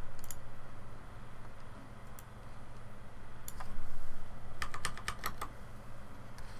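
Clicks from a computer keyboard and mouse: a few scattered clicks, then a quick run of about seven clicks about two-thirds of the way in. A low steady hum runs underneath.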